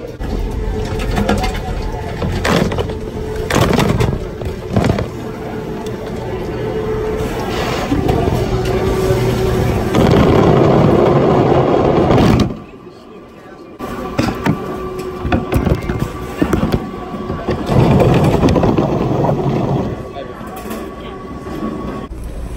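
Knocks and rattles of a plastic bin riding the airport security X-ray conveyor, with the phone inside it, under a steady hum and muffled voices. The noise drops away for about a second just past the middle.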